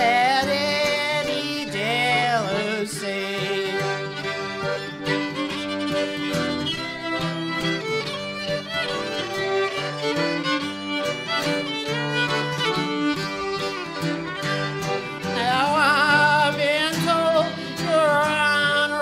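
Instrumental break in a live folk song: a fiddle plays the lead melody with wavering, ornamented lines over piano accordion chords and a strummed acoustic guitar. The fiddle comes to the fore again near the end.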